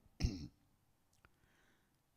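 A man briefly clears his throat, a single short sound, followed by a pause of near silence with one faint click a little past a second in.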